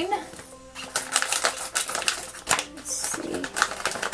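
Foil blind bag crinkling and crackling in the hands as it is worked open, a quick irregular run of sharp crackles.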